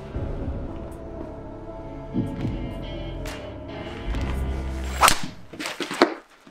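A golf driver swung hard strikes a teed ball with one sharp crack about five seconds in, and a couple of smaller knocks follow as the ball glances off the target. Background music plays underneath.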